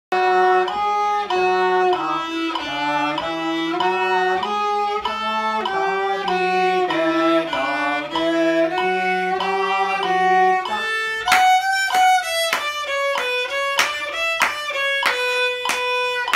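Violin played with the bow: a melody in even, held notes of about half a second each, then from about eleven seconds in, short, sharply attacked notes in a higher register.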